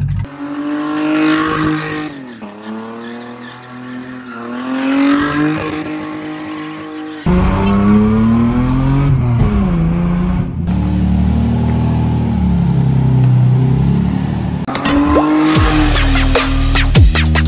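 Mazda RX-8's rotary engine revving up and down repeatedly, with tyres squealing as the car does donuts. The engine gets suddenly louder about seven seconds in.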